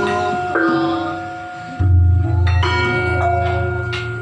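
Javanese gamelan playing: struck bronze metallophones and kettle gongs ring with long, overlapping tones. About two seconds in, a large hanging gong is struck and rings on low under the other notes.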